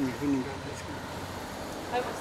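A voice trailing off at the start, then steady outdoor street background noise with a low hum.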